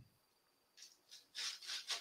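Near silence, then several faint, short scratchy noises in the second half.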